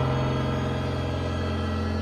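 Music: a single low chord held throughout, slowly fading a little.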